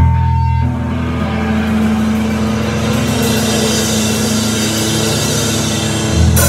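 Live band's amplified instruments holding a steady, sustained low chord, with a brighter wash of sound building in from about halfway through.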